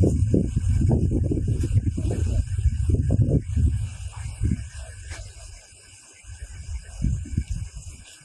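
Wind buffeting an outdoor microphone in an irregular low rumble over a steady hiss. It dies down about halfway through, with a few gusts near the end.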